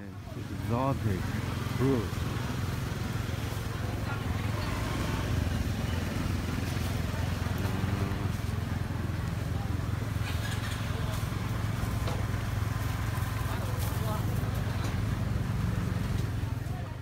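A small engine or motor running steadily at one pitch, a low hum that sets in at the start and keeps on throughout, with bits of people's talk over it.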